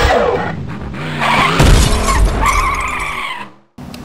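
Logo intro sting of music and sound effects: a crash with glass shattering about a second and a half in, followed by a tire-like screech that fades out shortly before the end.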